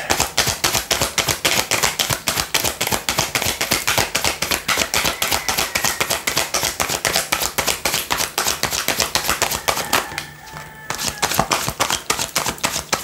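A deck of tarot cards being shuffled by hand: a quick, even run of card-on-card slaps, several a second, with a brief pause about ten seconds in.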